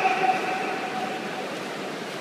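A spectator's long, drawn-out shout of encouragement to the swimmers, one held note that fades out after about a second and a half, over the steady noise of the indoor pool hall.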